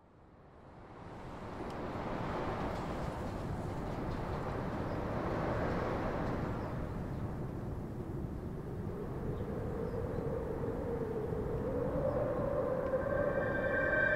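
A steady rushing, rumbling noise fades in from silence over about two seconds and holds, with a faint wavering tone rising out of it in the second half.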